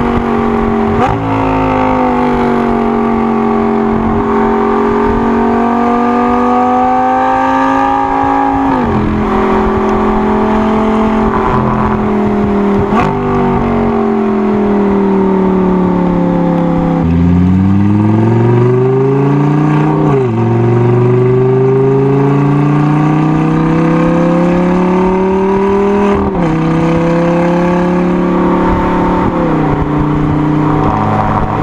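Audi R8's V10 engine heard close up at the tailpipe through an aftermarket VelocityAP Supersport stainless-steel X-pipe exhaust, pulling and easing off on the move. Its note climbs and falls, with a sudden drop in pitch at each of several gear changes.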